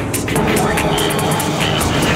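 Electronic psytrance music with fast hi-hat ticks, about four a second. A thick, dense synth layer comes in about a third of a second in.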